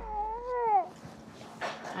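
A baby whining, a single drawn-out vocal sound that rises and falls in pitch and lasts under a second.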